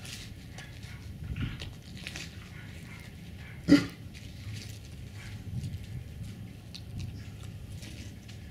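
A Tibetan mastiff puppy gnawing a birch log, its teeth scraping and clicking on the bark. One short, loud sound comes about halfway through.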